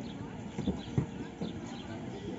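Outdoor park ambience: birds chirping over a background of distant, unclear voices, with three dull knocks in the middle.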